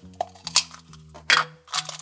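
Plastic collectible capsule being twisted open and the plastic bag inside handled, giving a few short clicks and crinkles over soft background music.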